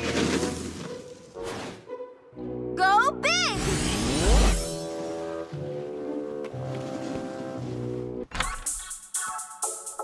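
Cartoon background score with sound effects: a whoosh at the start, a wavering high-pitched glide around three seconds in, and a deep boom just after it. About eight seconds in, the music switches abruptly to an upbeat electronic dance track with a steady beat.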